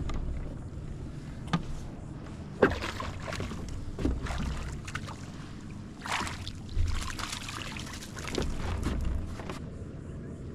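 Wind buffeting the microphone and water around a small plastic-hulled boat, with several sharp knocks on the hull and a splash about six seconds in as a landing net scoops a hooked fish from the surface.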